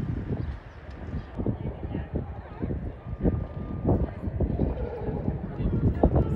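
Outdoor ambience: indistinct voices over a low background rumble, with irregular short knocks or thumps.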